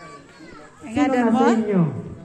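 A person's voice: one loud, drawn-out utterance about a second in that falls in pitch at its end, over quieter voices in the background.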